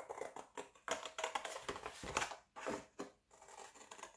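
Scissors cutting through thin cereal-box cardboard: a quick series of short snips with a few brief pauses between runs of cuts.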